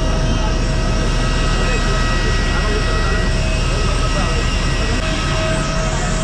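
Airliner jet engines running: a loud, steady rush with several high, steady whining tones over it, and faint voices underneath.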